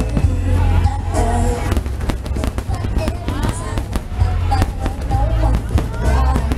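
Aerial fireworks bursting overhead: a rapid, irregular string of sharp bangs and cracks from glittering shells. Loud music with a heavy bass line and people's voices run underneath.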